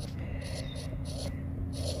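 Stylus writing on a tablet's glass screen: faint scratching with a few light taps, over a low steady hum.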